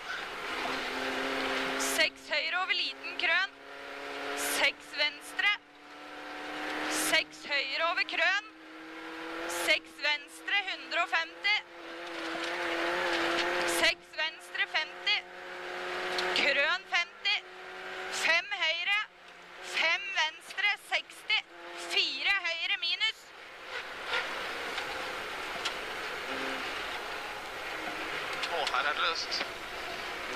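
Rally car engine pulling hard through the gears on a snowy stage, the sound climbing over a second or two and then cutting off sharply at each upshift, again and again. Toward the end it runs steadier and a little quieter as the car slows.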